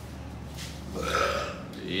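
A man's short wordless vocal sound, a bit under a second long, starting about half a second in; the saw in his hands is not running.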